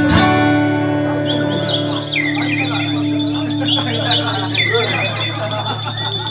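Live band music: a held chord rings on and fades out, while a flurry of high, bird-like chirps and whistles starts about a second in and continues to the end.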